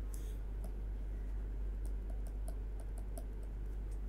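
Stylus tapping and clicking against a tablet writing surface during handwriting, a string of light, irregular ticks. A steady low electrical hum runs underneath.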